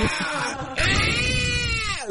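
A man vocally imitating the Airwolf helicopter: a breathy rushing noise, then from just under a second in a long, high screech held with the voice, rising slightly and falling back.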